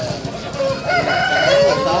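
A rooster crowing once: a long, held call beginning a little way in and lasting over a second.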